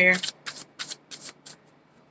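Tarot cards being shuffled by hand: a quick run of light card snaps that grows fainter and stops about one and a half seconds in.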